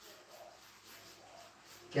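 Faint chalk strokes on a blackboard over quiet room tone, with a man's voice starting at the very end.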